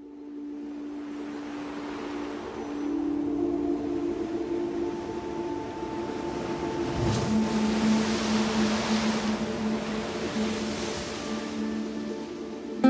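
Ambient soundtrack of long held drone tones, with the wash of waves breaking on a shore building up under it and growing louder toward the second half. A single low boom lands about seven seconds in.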